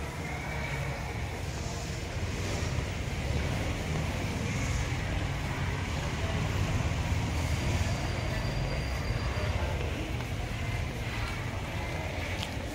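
Steady low rumbling outdoor noise, a little louder in the middle, with no clear distinct event.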